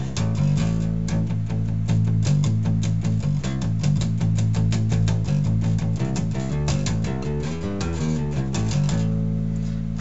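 1987 B.C. Rich Ironbird electric bass with a precision bass pickup, played through a Bugera guitar amplifier: a quick, steady run of plucked notes, easing off to a last ringing note near the end.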